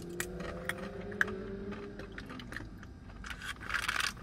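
Crunchy dried apple crisps being bitten and chewed, with sharp crunches scattered throughout and a denser run of crunching near the end.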